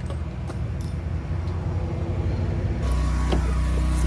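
Steady low rumble of road traffic, which grows louder about three seconds in, with a few faint clicks.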